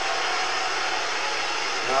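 A large sumo arena crowd making a steady din of voices and cheering.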